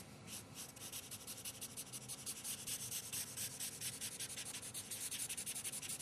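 Broad black felt-tip marker scribbling on paper in quick, even back-and-forth strokes, several a second, blocking in a solid black background.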